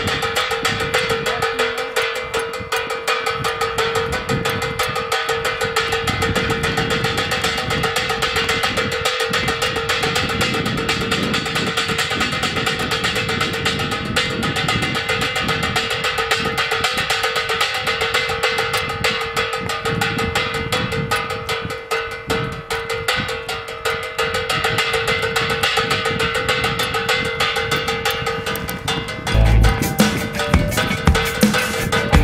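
Wind-spun propeller bird scarer: its rotating wire arm strikes an aluminium pan over and over, a continuous rapid metallic clatter with the pan ringing at one steady pitch.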